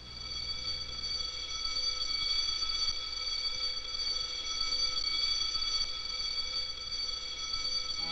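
A high-pitched chord of several steady tones in the film's soundtrack, fading in at the start and then held without change.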